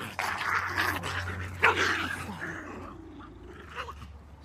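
Dogs growling and scuffling while they pull against their leashes, busiest in the first two and a half seconds, with a sharp cry about one and a half seconds in, then quieter.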